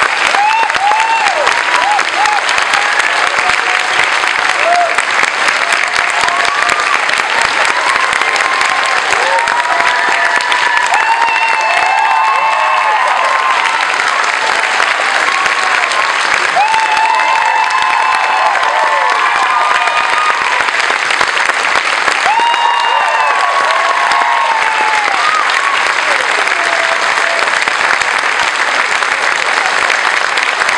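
Audience applauding steadily throughout, with scattered voices calling out and whooping over the clapping.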